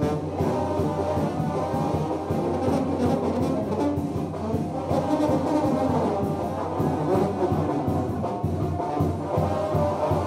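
Brass band playing dance music, trombones prominent over trumpets, with a steady beat.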